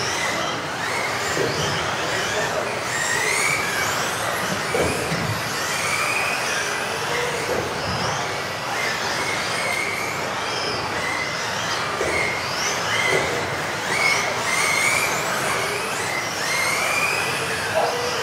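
Several electric RC off-road race cars lapping a track: high motor whines that rise and fall over and over as they accelerate and brake, over a steady hiss of tyres on the floor. There are a few short knocks, and the hall adds echo.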